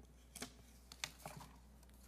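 A few short, faint clicks over a steady low hum, the loudest about half a second and one second in.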